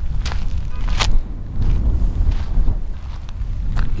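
Footsteps of a person walking, a sharp step about once a second, over a steady low rumble.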